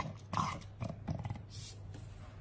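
A French bulldog making a run of about five short grumbling vocal noises.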